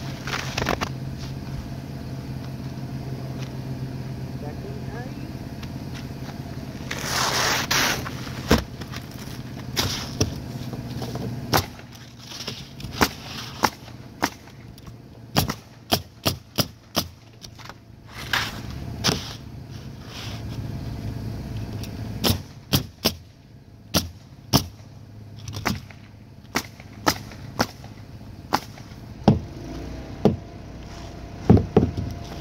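Pneumatic roofing nailers firing as asphalt shingles are nailed down: sharp single shots, scattered at first and then in quick runs of several, over a steady low hum. About seven seconds in there is a one-second rush of noise.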